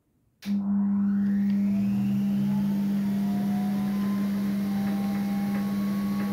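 Steck pianola's suction mechanism and roll drive starting up as the blank roll leader winds through, before any notes play: a steady hum with a hiss of air, starting suddenly about half a second in, with a faint rising whine as it comes up to speed.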